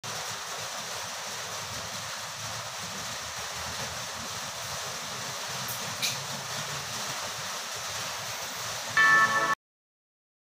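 Steady background hiss with a single faint click about six seconds in, then a brief, louder pitched sound near the end that cuts off abruptly.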